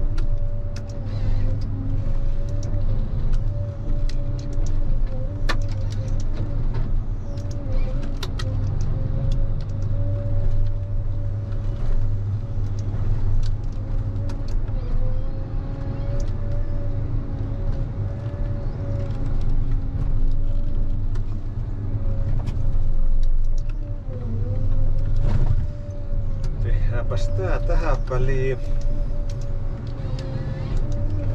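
Ponsse Scorpion King harvester running steadily while its H7 harvester head fells and processes a tree: a constant engine hum under a steady hydraulic whine, with scattered clicks and knocks. The whine dips briefly under load a few times, twice close together near the end.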